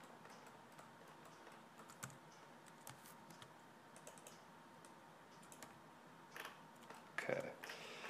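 Faint, sparse clicks and taps of a computer keyboard and mouse over a quiet room, with a brief louder noise near the end.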